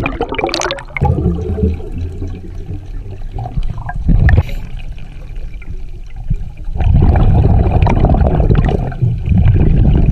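Scuba diver's exhaled bubbles rushing out of the regulator underwater, in surges with quieter gaps between breaths: a short burst about four seconds in and a long one of about two seconds near the end.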